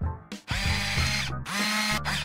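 Logo-sting music with a steady low bass, overlaid with loud whirring, machine-like sound effects. The whir comes in about half a second in, lasts about a second, drops out briefly, then returns for about half a second near the end.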